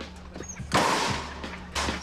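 Two loud, sudden bangs about a second apart, each fading out over a fraction of a second, over a steady low hum.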